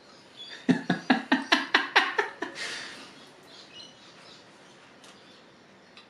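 A quick run of about nine sharp mechanical clicks, roughly five a second, from working the controls of a vintage Fujica fixed-lens rangefinder camera, followed by a brief hiss.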